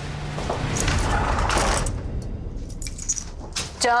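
Someone coming in through a front door: the door moving and clothes rustling, then a few clicks and light metallic jingling like keys about two to three seconds in. A woman's voice calls out right at the end.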